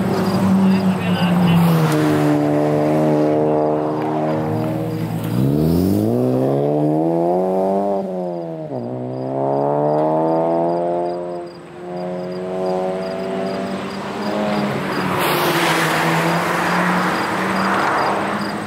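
Car engine on a race track accelerating hard, revs climbing, dropping sharply at a gear change, then climbing again. A rushing noise builds up near the end as a car comes closer.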